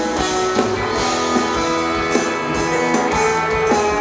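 Rock band playing live, guitar to the fore over drums with a steady beat.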